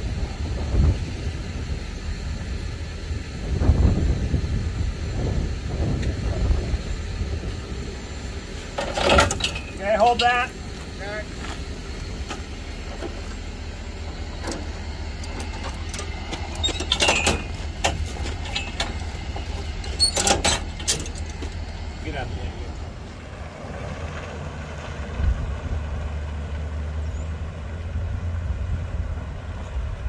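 Tow vehicle's engine running steadily at low speed while it takes up tension on the tow bar, with a few sharp knocks and brief faint voices.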